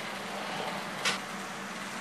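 Steady low background noise with a faint hum, and one brief click about a second in.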